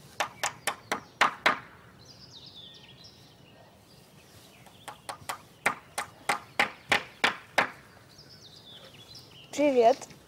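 Hammer driving nails into wooden fence boards: two quick runs of sharp strikes, about nine and then about ten, a few a second. A short wavering call sounds just before the end.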